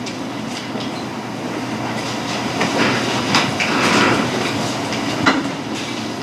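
Steady, noisy background of a crowded courtroom, with no clear speech and a few faint clicks or knocks.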